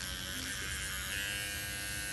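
Motorized microneedling pen buzzing steadily as it works over the skin of the cheek; its tone brightens a little about a second in.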